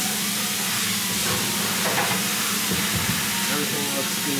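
Steady hiss with a low hum underneath, and a few faint knocks about two and three seconds in.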